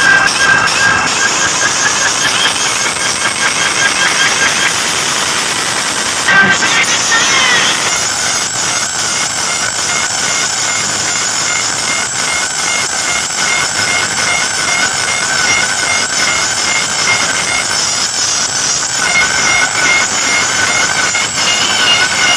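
Loud DJ music played through a large sound system, with a sudden change in the track about six seconds in and a warbling high tone from about eight seconds on.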